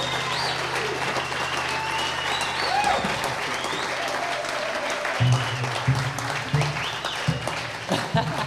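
Audience applauding and cheering as a song ends, over the last low note of acoustic guitar and upright bass ringing out for the first few seconds. Near the end a few short low plucked notes sound through the applause.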